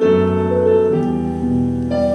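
Slow live instrumental music: held notes that change every half second or so, from a clarinet with a piano-like accompaniment.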